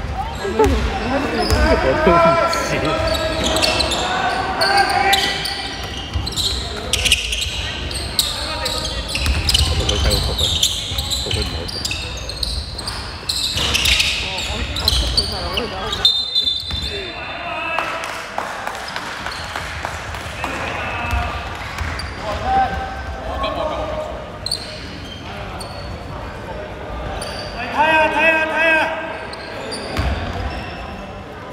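Basketball game in an echoing sports hall: the ball bouncing on the hardwood court and players' voices calling out.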